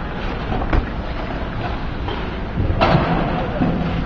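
Ice hockey rink ambience during a stoppage in play: a steady arena hum with a faint click about a second in and a sharper knock near three seconds in.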